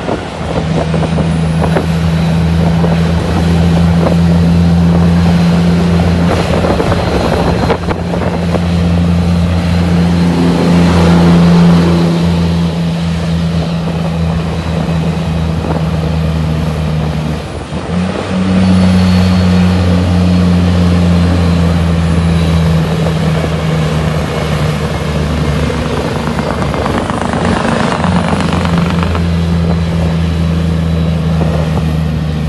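Heavy diesel engine of a Shacman F3000 tractor unit pulling a loaded lowboy trailer, a loud steady drone that dips briefly a little past halfway through and then picks up again.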